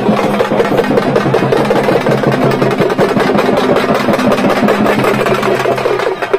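Procession drums beating fast and continuously over a steady engine hum, which stops shortly before the end.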